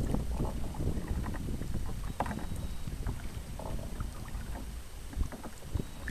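Kayak being paddled: water splashing and lapping at the hull in irregular small splashes, over a steady low rumble of wind on the microphone.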